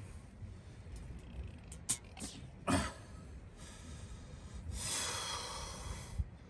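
A man breathing out heavily: a short sharp breath about halfway through, then a long breathy sigh near the end, with a few small clicks before them.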